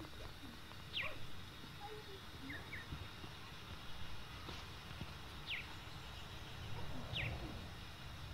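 A small bird calling in the background: a few short, high chirps, each sliding down in pitch, spaced a second or more apart, over a low steady outdoor rumble.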